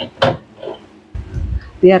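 Two sharp knocks about a quarter second apart, then a low dull rumble: kitchen things being moved about and set down on a counter.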